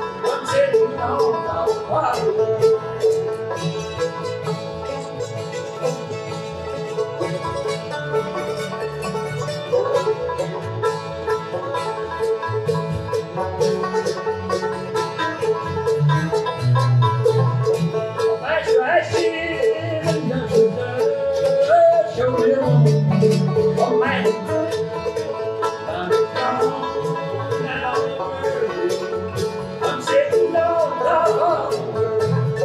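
Acoustic bluegrass band playing live: fast banjo picking over mandolin, acoustic guitar and upright bass.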